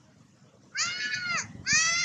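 Young macaque screaming: two loud, high-pitched calls, the first starting a little under a second in and the second just before the end.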